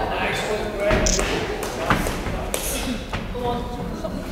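Indistinct voices of people around a boxing ring, with a couple of sharp thuds from the boxers in the ring about one and two seconds in, the second the loudest.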